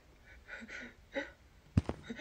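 A few soft, breathy gasps from a person, then a single heavy thud near the end, the first of a run of footstep-like thuds.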